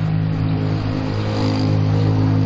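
A motor running at an even speed: a steady low drone.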